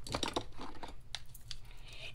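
A few light clicks and taps with a soft rustle as hands handle cardstock and pick up a bottle of liquid glue.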